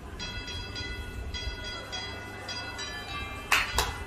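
A high, tinkly bell-like tune of short chiming notes, like a music box or a musical Christmas light. There is one sharp knock about three and a half seconds in.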